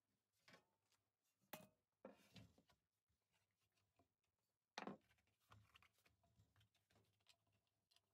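Near silence with faint handling noises as dough rolled on a wooden rolling pin is lifted and unrolled onto a metal baking tray. There are a few soft knocks and rustles, the sharpest about a second and a half in and again about five seconds in.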